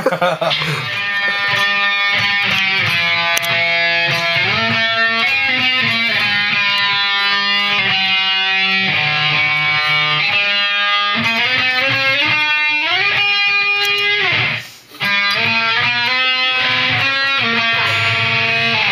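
Electric guitar with a V-shaped body playing a loud lead line of sustained notes, with frequent slides up and down in pitch and a brief break about three-quarters of the way through. A short laugh comes at the start.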